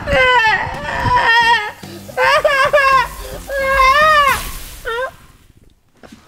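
Baby-like crying: a run of high wailing cries, each rising and falling in pitch, that die away about five seconds in.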